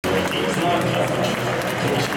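Indistinct voices over the steady background hubbub of an athletics stadium.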